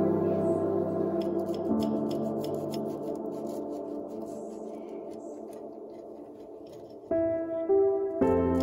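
Soft ambient background music with held chords that slowly fade, then a new chord about seven seconds in. Under it, faint short scrapes of a table knife sawing through a toasted wrap on a ceramic plate.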